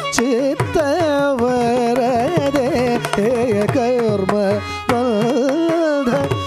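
Carnatic male vocal singing with constant gliding and oscillating ornaments (gamakas), accompanied by violin and sharp mridangam drum strokes.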